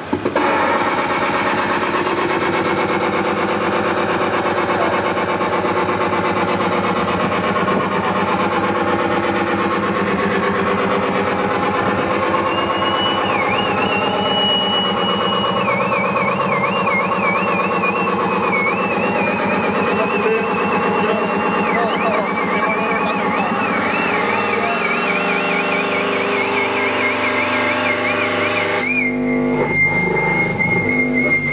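Live harsh noise music: a loud, dense, unbroken wall of distorted electronic noise full of droning tones. From a little before halfway a high, wavering whistle-like tone rides above it, and the texture shifts abruptly near the end.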